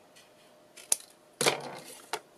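Scissors cutting through a folded old book page: a sharp snip a little under a second in, then a louder, crunchier cut about half a second later.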